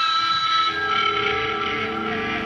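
Live rock band music at the song's opening, with several long held high notes sounding steadily over the band.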